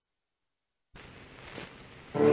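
Surface hiss and crackle of a shellac 78 rpm record's lead-in groove, starting suddenly about a second in, with one louder click.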